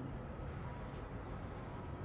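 Quiet outdoor ambience: a steady low rumble with a faint thin hum, no distinct sound standing out.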